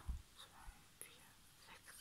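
Near silence, with a faint whisper and a few soft ticks and a low thump of small objects being handled.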